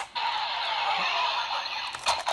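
Electronic sound effect from the DX VS Changer toy blaster's small speaker: a steady, tinny rushing noise that starts just after the beginning.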